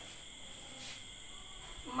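Quiet room tone with a faint, steady high-pitched whine made of two unbroken tones, plus a brief soft rustle a little before the middle.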